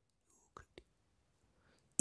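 Near silence, with two faint, very brief ticks a little past half a second in.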